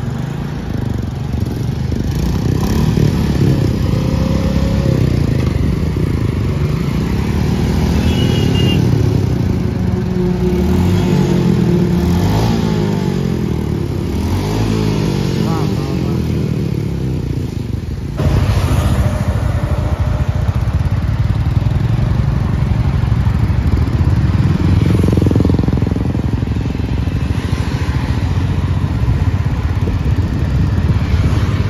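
Royal Enfield motorcycles running at the roadside, with pitch rising and falling as vehicles go by. About two-thirds of the way in, the sound cuts abruptly to a louder, steady motorcycle engine running while riding in traffic.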